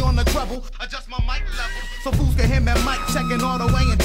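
Hip hop track: rapping over a beat of heavy bass and drums. The bass and drums drop out for about a second and a half near the start, then the full beat comes back in about two seconds in.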